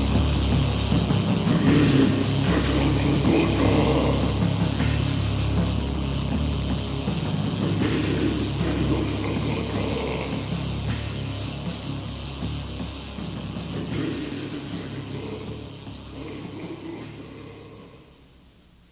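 Lo-fi, distorted metal music from a demo recording, heavy in the low end, fading out steadily over the whole stretch.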